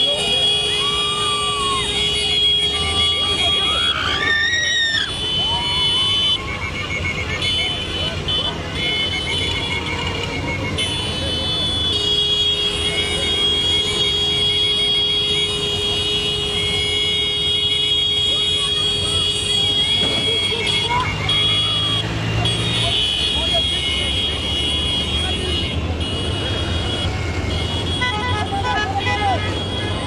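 A procession of many motorcycles rides past with engines running. Long, high, steady blasts of horns or whistles sound on and off over the engine rumble, with voices shouting and rising and falling.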